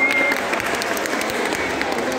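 Spectators applauding with scattered clapping, with voices over it, as the winner of a bout is declared.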